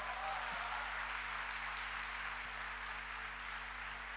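Large audience applauding, a steady wash of clapping that swells in and holds.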